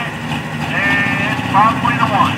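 Diesel pickup truck engine running steadily at the start of a pull, a low even rumble, with a voice over a loudspeaker on top.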